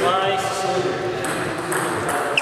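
Indistinct voices talking in a large hall, with a couple of light taps of a table tennis ball in the second half.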